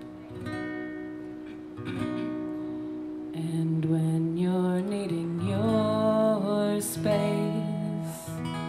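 Live solo acoustic performance: an acoustic guitar strummed under a woman's voice holding and bending sung notes.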